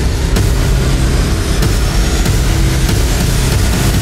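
Steady, loud rush of hurricane wind and driving rain, with a low sustained music drone underneath.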